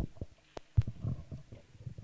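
Handling noise from a microphone: irregular low thumps and knocks, with one sharp click about halfway through.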